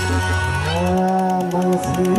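Male singer's voice gliding up into a long held note over live band accompaniment, the low bass dropping out about a second in.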